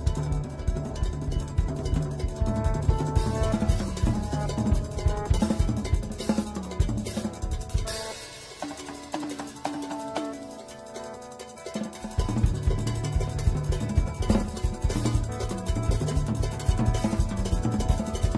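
Live improvised jazz: a DW drum kit played busily on cymbals, snare and bass drum, over sustained guitar and bass notes. About eight seconds in the bass and kick drop out, leaving quieter cymbal work and a held note, and the full band comes back in around twelve seconds.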